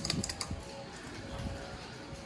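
A few quick light clicks from a hall-call button being pressed on an old US elevator that has been shut off; no elevator machinery answers, leaving only a faint steady hum.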